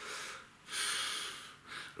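A man breathing out hard after a drag on a cigarette, with no voice in it: a short breath, then a longer, louder hissing exhale of nearly a second, and a brief breath near the end.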